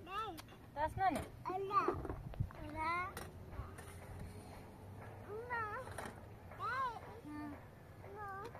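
A small child's high-pitched voice calling and babbling in short rising-and-falling phrases, with a few light clinks of metal dishes between them.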